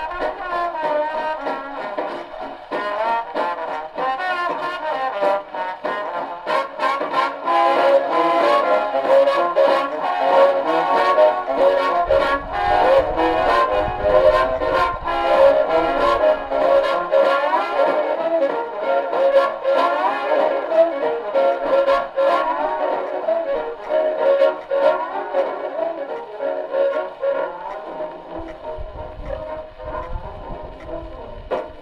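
1939 big-band swing recording, with the brass section playing full ensemble over a steady drum beat. It has the narrow, dull top end of an old record.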